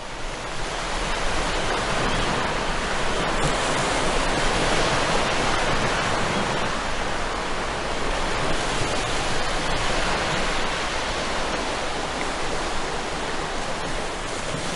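Ocean surf washing on a rocky shore: a steady rushing wash of waves that fades in over the first second or so.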